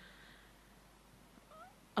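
A pause in speech: faint room tone. About one and a half seconds in comes a brief, faint rising tone.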